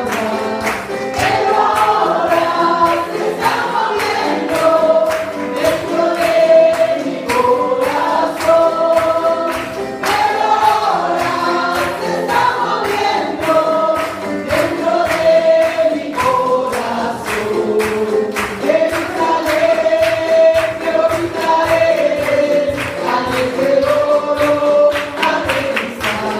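Spanish-language congregational worship singing: many voices singing a song together, led by a singer on a microphone, over amplified accompaniment with a steady beat.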